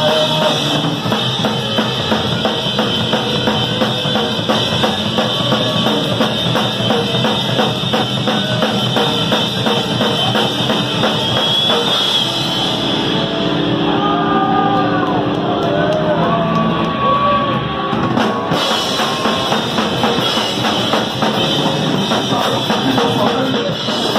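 Hardcore punk band playing live, loud: fast drumming with cymbals, distorted guitar and bass. About halfway through, the cymbals drop out for several seconds and bending, sliding notes stand out, then the full band crashes back in.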